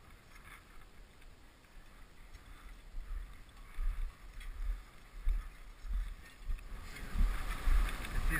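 Wind buffeting a helmet-mounted action camera's microphone in gusts, louder from about three seconds in and strongest near the end. Faint crunches of boots stepping in snow come through underneath.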